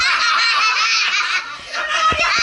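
A group of people laughing together loudly, several voices overlapping, easing briefly about one and a half seconds in.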